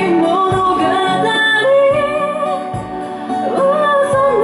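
Female vocalist singing a slow ballad live into a microphone, holding long bending notes over instrumental accompaniment.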